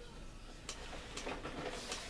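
Handling noise of a boxed plastic model kit being pulled out and moved: faint rustling with three light clicks or taps.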